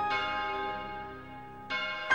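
Song soundtrack with a tolling bell: one struck bell note rings out and slowly fades, then a new strike comes near the end.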